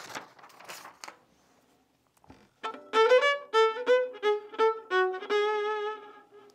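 A brief rustle of paper, then a violin played with the bow: a quick phrase of short separate notes, ending on a longer held note with vibrato.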